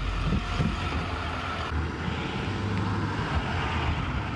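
Steady low rumble of a bus engine running at the open door, with a noisy hiss over it.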